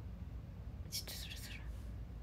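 A woman's brief whisper or breathy exhale about a second in, over a steady low hum.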